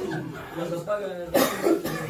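A man's voice speaking, broken by two sharp coughs about a second and a half in.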